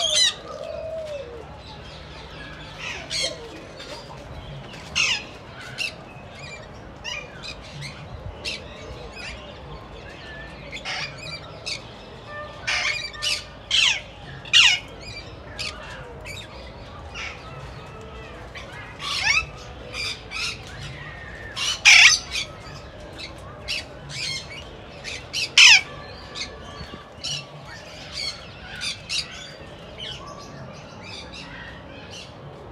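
Caged parakeets and other small parrots calling: a continual run of sharp squawks, many sliding down in pitch, over steady chattering. The loudest squawks come about two-thirds of the way through.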